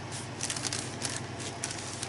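A balled-up wad dabbed and rubbed over a painted journal page, making a few faint, short crinkly rustles.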